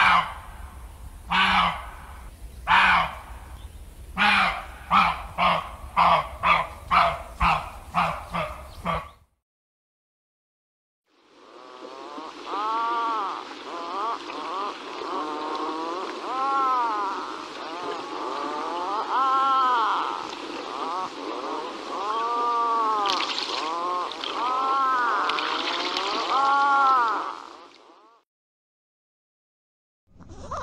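A run of short animal calls that come faster and faster, then stop. After a pause of about two seconds, a flock of swans honking, many overlapping calls rising and falling in pitch.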